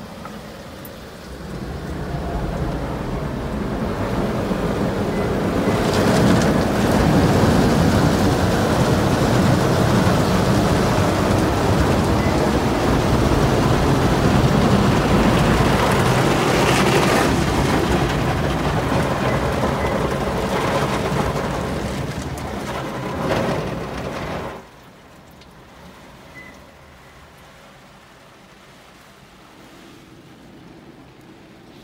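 Automatic gantry car wash heard from inside a kei van's cab: rotating brushes scrubbing and water spraying over the body and windows, building up over the first few seconds and running loud, then cutting off suddenly about 25 seconds in.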